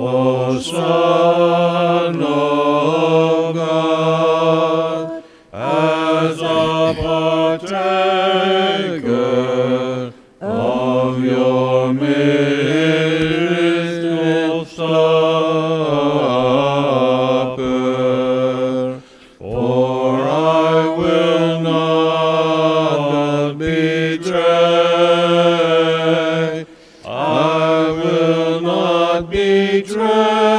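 Byzantine church chanting: a sung melody line moving over a low, steadily held drone note, in long phrases broken by a few brief pauses.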